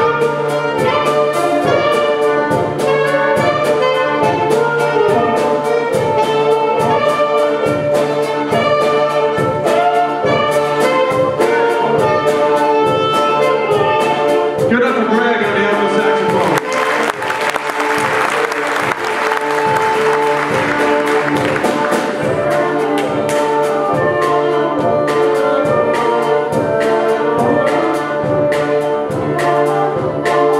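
Live mixed jazz-classical ensemble of strings, saxophone, bassoon, tuba and trumpet playing a contemporary jazz tune with a steady pulse. About halfway through, a denser, brighter passage takes over with the trumpet out front, then eases back.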